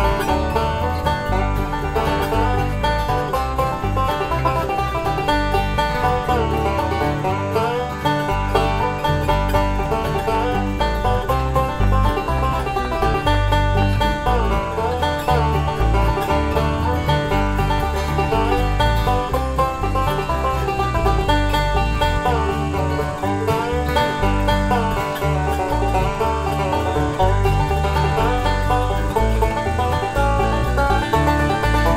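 Resonator banjo and steel-string acoustic guitar playing a bluegrass instrumental duet, with rapid picked banjo notes over steady guitar accompaniment.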